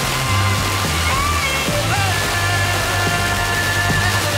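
Music from an FM radio broadcast received as a very weak signal on a Sony ST-SA3ES tuner, buried in steady hiss from the weak reception.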